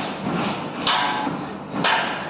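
Hammer striking steel on a tower crane's mast, twice, about a second apart, each blow with a short metallic ring.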